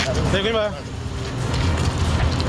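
A short raised voice about half a second in, over a steady low rumble of outdoor wind and handling noise on a phone microphone.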